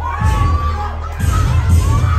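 A crowd of children and teenagers shouting and cheering over bass-heavy dance music, with a burst of shouts near the start and again near the end.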